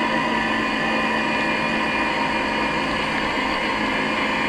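Steady running noise of the vehicle carrying the camera: a constant motor hum and whine with road noise, unchanging in pitch or level.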